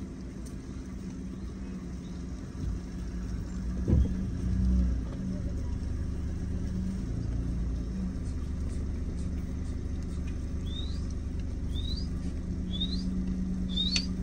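Low, steady rumble with a wavering hum, like a vehicle engine running slowly, with a louder thump about four seconds in. Near the end, four short, high, rising chirps come about a second apart.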